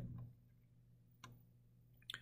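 Near silence with a low steady hum, broken once a little past the middle by a single faint computer-mouse click.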